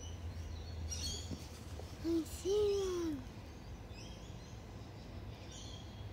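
A low hooting call in two notes about two seconds in, a short one then a longer one that sags in pitch, over faint scattered high bird chirps and a low outdoor rumble.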